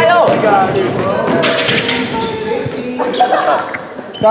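A basketball bouncing on an indoor gym court during play, with players' voices calling out and echoing in the hall.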